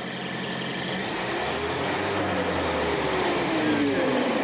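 Car engine revved in fourth gear with the driven wheels spinning freely off the ground: the note rises for about a second and a half, then eases back down. A steady high hiss joins about a second in.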